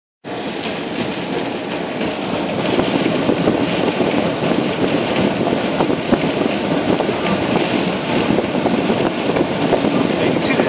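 Storm-force wind buffeting a stationary car, with rain hitting the bodywork and glass, heard from inside the cabin: a loud, steady rush of noise with many small sharp taps through it, cutting in suddenly just after the start.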